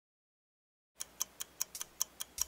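Silence for about a second, then a ticking sound effect from an animated loading intro, with sharp, evenly spaced ticks about five a second, like a clock.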